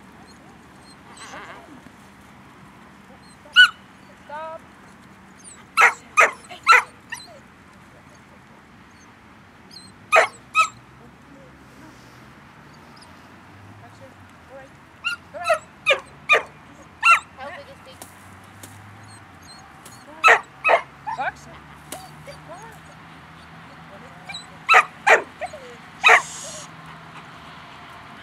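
Rottweiler giving short, high-pitched barks in clusters of two to four, repeated every few seconds while working sheep.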